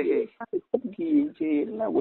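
Speech only: a voice talking, with a narrow, phone-like sound.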